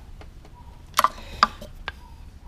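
Three sharp metallic clicks from hand tools on a valve rocker adjuster and its lock nut, while the valve clearance is set and locked.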